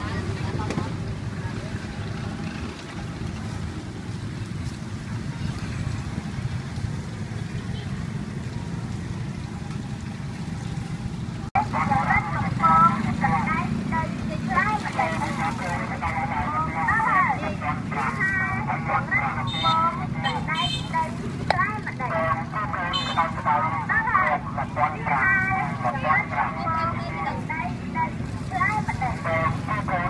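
Outdoor street-market background: a steady low rumble, then after an abrupt cut about a third of the way in, people talking over it.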